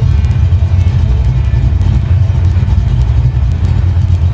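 Paxton-supercharged Ford 349 cubic-inch stroker V8 in a 1990 Mustang GT, idling and heard from behind at the exhaust: a loud, deep rumble that pulses unevenly. Rock music plays faintly under it.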